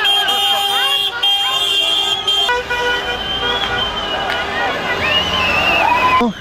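Several car horns sound at once in long, overlapping blasts as a convoy of cars drives past celebrating, with people shouting and cheering over them. Near the end a rising, wavering tone comes in.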